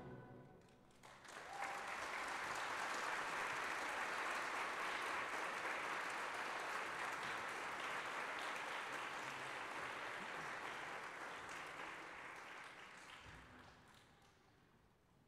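Audience applause in a concert hall, starting about a second in as the orchestra's final chord dies away. It holds steady, then fades out near the end.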